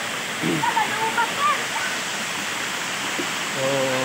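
Waterfall pouring onto rock close by: a steady, unbroken rush of water.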